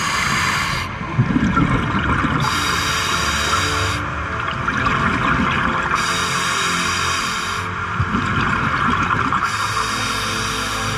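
Background music over a diver's breathing cycle in a surface-supplied diving helmet. A hiss from the helmet's demand regulator comes with each breath about every three and a half seconds, and bubbly exhalations rumble in between.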